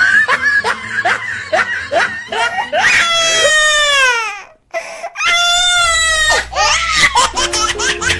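A person laughing hard in quick, rhythmic bursts, broken in the middle by two long drawn-out falling wails.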